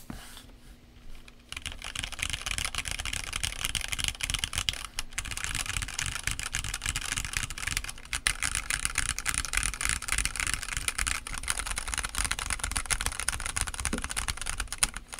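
Typing on a Redragon K641 Pro Shaco aluminum-case 65% mechanical keyboard with Redragon Red switches and double-shot PBT keycaps: a fast, continuous stream of keystrokes starting about a second and a half in, with brief pauses near five and eight seconds.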